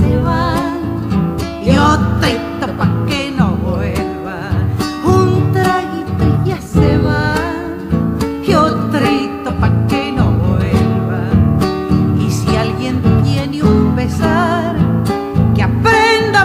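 Argentine folk music: acoustic guitars strummed and plucked in a passage between sung verses.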